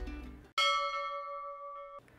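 A single bell-like chime is struck about half a second in. Its several ringing tones slowly fade, then cut off suddenly. Before it, the tail of background music fades out.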